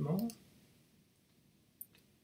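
Computer keyboard keys clicking as a value is typed in: a couple of quick light clicks just after the start and one sharper click near the end.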